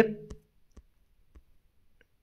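The tail of a spoken word, then three faint, short clicks spread across about a second.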